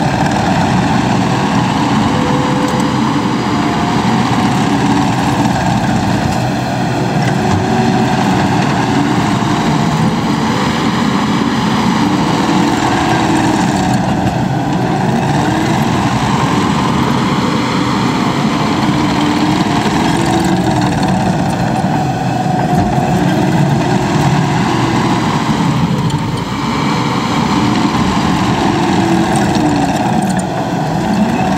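Takeuchi TL12V2 compact track loader's diesel engine running steadily under work, its pitch rising and falling again and again as the machine drives, turns and works its bucket.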